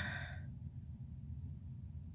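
A woman's short breathy sigh that fades out within about half a second, followed by a low steady room hum.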